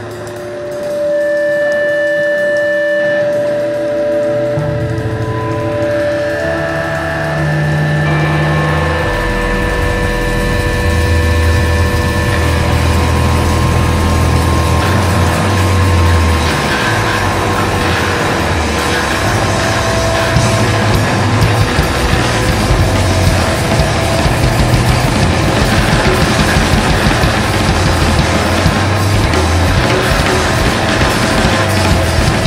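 Post-hardcore band music: a few held, ringing guitar notes open the passage, a low bass line comes in about four seconds in, and about nine seconds in the full band enters, loud and dense with distorted guitars.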